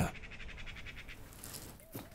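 Faint background chirping of birds, with a rapid run of high chirps in the first second, and a soft click at the very end.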